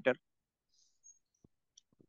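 A man's voice ends a word, then near silence broken by three or four very faint clicks.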